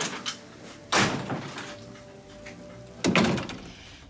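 A house front door being opened and shut: two sudden thuds about two seconds apart.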